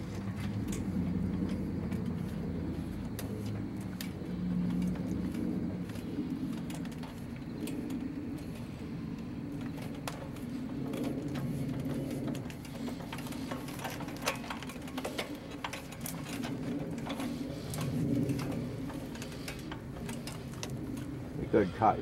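Manual wheelchair rolling slowly over brick pavers: a low, uneven rumble that swells and fades, with light scattered clicks in the second half.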